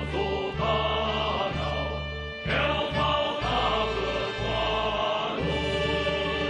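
A Vietnamese revolutionary song performed by a choir over instrumental accompaniment, with sustained bass notes changing about once a second.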